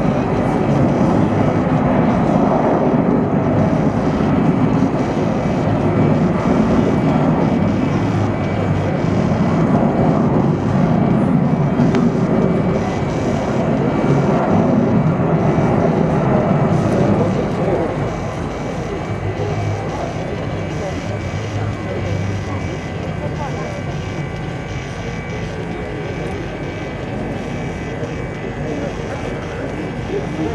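Four Rolls-Royce Trent 500 turbofans of an Airbus A340-600 flying past overhead: a steady jet rumble that drops in level about two-thirds of the way through as the aircraft moves away.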